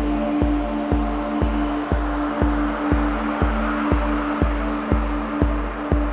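Psybient electronic music at 120 BPM: a steady kick drum twice a second with hi-hats between the beats under sustained low synth tones. A swishing noise swell rises and falls around the middle.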